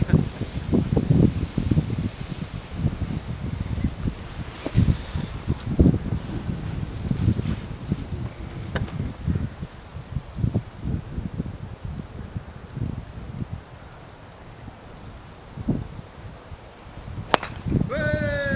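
Wind buffeting the microphone in uneven gusts, then near the end a single sharp crack as a golf driver strikes the ball off the tee.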